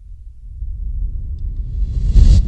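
Low rumbling sound-effect swell rising out of silence and building steadily, with a hiss creeping in near the end: a chapter-break transition effect.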